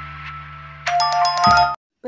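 Short electronic intro jingle: a held low synth chord, joined about a second in by a run of bright, bell-like chime tones, all cutting off suddenly just before the end.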